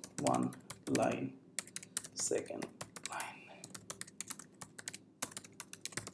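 Typing on a computer keyboard: a quick run of sharp keystroke clicks with brief pauses between words.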